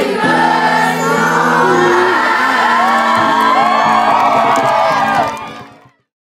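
Music with many voices singing together, fading out quickly to silence near the end.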